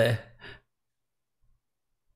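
A man's voice finishing a word, then a short breath out and near silence.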